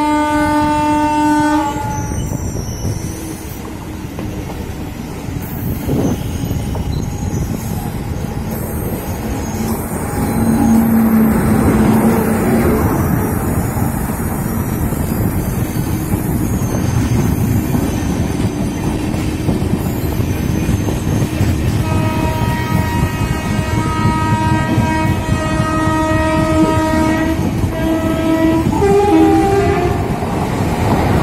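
A WAP7 electric locomotive's air horn sounds, then the express train passes at speed with loud rolling wheel-and-rail noise that swells as the coaches draw alongside. A horn is held again for several seconds about two-thirds of the way in, with a short final blast near the end.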